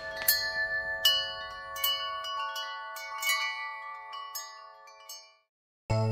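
Tinkling wind-chime sound effect: a cascade of high, ringing chime strikes that slowly fade away. After a short silence, cartoon music with a beat starts near the end.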